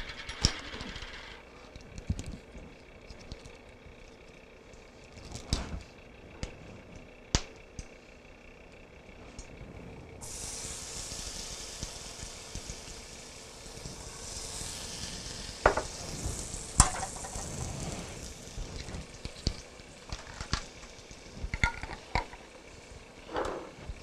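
Minced garlic sizzling in a hot frying pan as it is spooned in from a jar, with a few sharp clicks of the spoon. The sizzle grows suddenly louder and brighter about ten seconds in.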